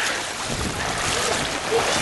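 Floodwater sloshing and swishing around the legs of people wading knee-deep through it, a steady rushing wash with no distinct splashes.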